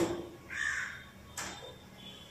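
A crow cawing: a short harsh call about half a second in, then a sharper, briefer one about a second and a half in.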